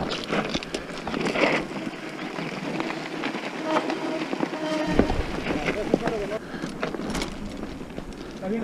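Mountain bike rolling down a loose gravel and rock trail: tyres crunching over stones and the bike rattling, with many sharp clicks and knocks. A deeper rumble joins about five seconds in.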